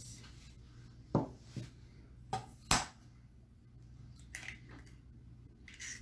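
A raw egg knocked against the rim of a stainless steel mixing bowl to crack its shell: four sharp knocks in the first three seconds, then two fainter taps near the end.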